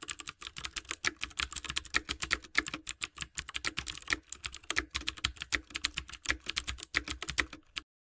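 Computer keyboard typing sound effect: a rapid, uneven run of keystroke clicks, several a second, that cuts off suddenly shortly before the end.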